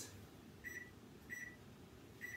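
Microwave oven keypad beeping as the cooking time is entered: two short, high beeps about two-thirds of a second apart.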